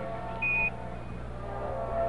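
A single short high beep on the air-to-ground radio channel, about half a second in, in the gap between Mission Control's transmission and the crew's reply. It sounds over a steady hum from the radio and broadcast line.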